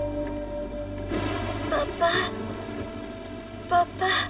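Steady rain under a low sustained music score, with a couple of short voice sounds about halfway through and again near the end.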